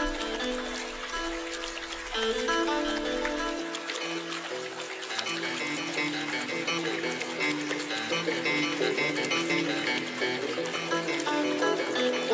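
Instrumental music playing a melody of held notes; lower accompanying notes come in about four seconds in.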